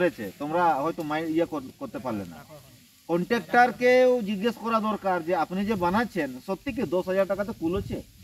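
A man talking in a group discussion, with a short pause about two and a half seconds in and one long drawn-out vowel soon after.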